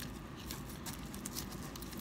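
Faint scattered light ticks and rustles of hands handling small foil-wrapped chocolate eggs.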